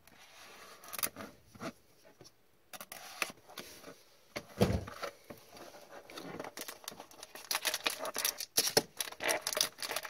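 A utility knife slitting the wrap on a cardboard trading-card box, then the box lid opened and the box handled, with a low thump about halfway through. Near the end come dense crinkling sounds as foil card packs are taken out.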